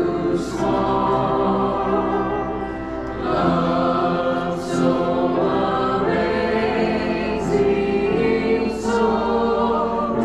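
A congregation singing a hymn together from hymnals, in long held notes that move from note to note every second or so.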